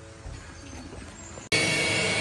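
Faint sounds, then an abrupt cut about one and a half seconds in to two vacuums running together with a steady whine and hum. They are drawing the air out from behind a new vinyl pool liner to pull it tight against the walls.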